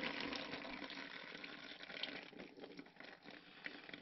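Soaked cardboard being peeled up off waterlogged worm-bin bedding: a faint wet crackling with dripping and trickling water, louder at first and dying away over the last couple of seconds.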